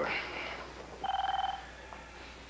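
Desk telephone ringing for an incoming call: one short, steady electronic ring about half a second long, about a second in.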